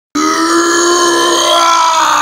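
A man's long, loud yell, held on one pitch after a sudden start and dipping slightly near the end.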